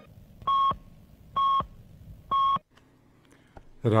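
Three short electronic beeps, all at the same pitch and evenly spaced about a second apart: a radio time signal marking ten o'clock.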